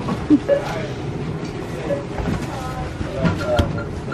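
Wire shopping cart rattling and clattering, with scattered metallic clicks over a steady noise.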